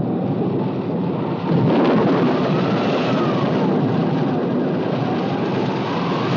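Film sound effect of a storm: a loud, steady rumble of wind with a faint wavering howl above it.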